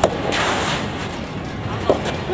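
Soft tennis rally: a sharp pop of a racket striking the soft rubber ball at the start, and another strike near the end as the near player swings.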